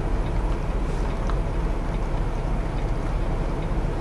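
Semi-truck diesel engine idling, heard inside the cab as a steady low rumble.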